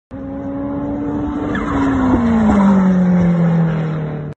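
Car engine sound effect over an animated logo intro, its note falling steadily with a couple of small steps down.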